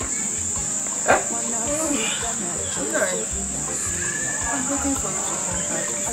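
Crickets chirring steadily in a continuous high trill, with a brief sharper sound about a second in.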